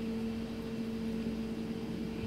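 A steady machine hum made of two constant tones over a faint even hiss, like an appliance or ventilation unit running. No knife strokes stand out.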